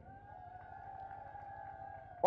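A faint, steady, high tone with one overtone, held for almost two seconds without changing pitch.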